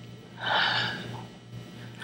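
A woman's single audible breath about half a second in, drawn in a hesitant pause while she searches for a name, with a fainter breath near the end. A low steady hum runs underneath.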